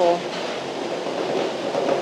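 Kubota mini excavator's diesel engine running steadily as the machine tracks forward and pushes sandy fill with its dozer blade.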